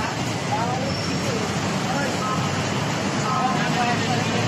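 Steady road traffic noise from a busy city street below a footbridge, with people talking faintly in the background.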